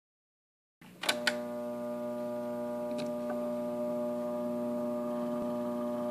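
Victor Electrola RE-45 phonograph with a needle set on a spinning shellac 78 rpm record: sharp clicks about a second in as the needle meets the record, then a steady hum from the set and surface noise of the lead-in groove, with two faint ticks around three seconds, before the music starts.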